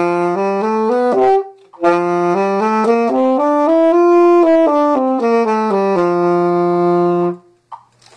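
Tenor saxophone playing a concert F major scale. A first try climbs a few notes and breaks off about a second in; after a short gap the scale runs one octave up and back down and ends on a long held low F.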